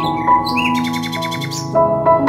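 Background keyboard music with held notes, with a bird's rapid chirping trill over it in the first half.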